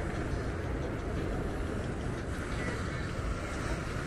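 Steady rumble of wind on the microphone, with ocean surf breaking along the sea wall.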